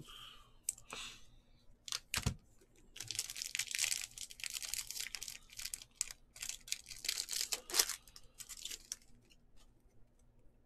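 A Bowman baseball card pack's wrapper being torn open and peeled back by hand. It makes a dense crackling, crinkling rustle from about three seconds in that dies away near the end. Before that come a few sharp clicks and a low thump.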